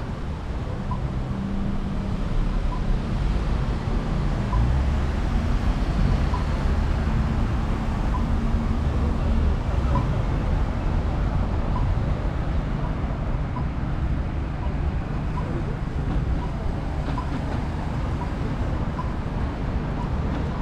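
Street traffic at a signalised intersection: a steady low rumble of car engines and tyres, swelling as a car turns through around the middle. A pedestrian crossing signal ticks faintly about once a second, the slow locator tick an Australian crossing button gives while the signal shows don't walk.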